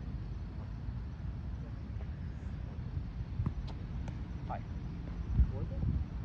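Steady low wind rumble on the microphone with a few faint short knocks, then, near the end, one dull thump as the roundnet ball is served and hit.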